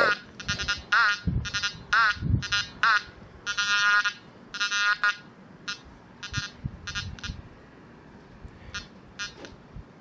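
Quest Pro metal detector sounding a series of short electronic tones while its search coil is pumped up and down during ground balancing. The tones come thick and fast at first, some dipping and rising in pitch, then thin out to short, sparse pips in the second half as the balance settles. A couple of low thumps come early on.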